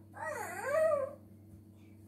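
A high-pitched whining cry from a person, lasting about a second, that dips and then rises in pitch.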